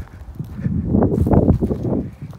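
Footsteps walking down a wooded hillside path over dry leaf litter, twigs and dirt, close to the microphone, crunching loudly from about half a second in.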